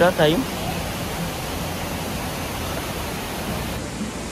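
Steady rushing of a mountain stream flowing over boulders, even and unbroken, after a last word of speech at the very start.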